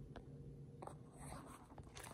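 Faint scraping and rubbing with a few light clicks over a steady low hum.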